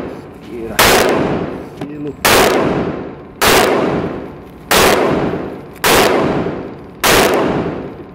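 Gunshots in an indoor shooting range, six in a steady string about one every second and a quarter, each ringing out in a long echo off the range walls.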